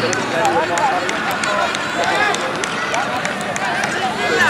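Scattered shouts and calls from several voices at once, over a steady outdoor background noise.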